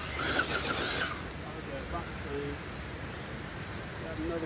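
Electric motor and drivetrain of a 1/10-scale RC rock crawler whining in a short burst during the first second, with its tires scrabbling on bare rock. Faint talking follows around the middle.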